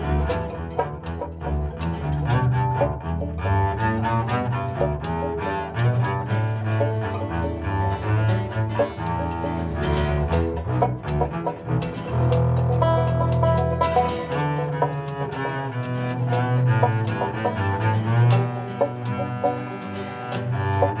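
Double bass played with a bow, holding low sustained notes, within a bluegrass string band's instrumental passage.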